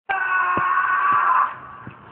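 A steady held tone starts abruptly, holds and then fades about three-quarters of the way through, over three low thuds of a basketball bouncing on the floor, roughly half a second to three-quarters of a second apart.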